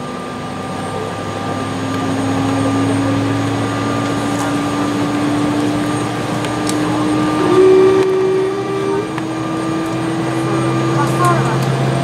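Embraer 170's General Electric CF34 turbofan engines running, heard inside the cabin, a steady whine and hum that slowly rises in pitch as the jet starts to move on the apron. A short higher-pitched hum joins in about halfway through.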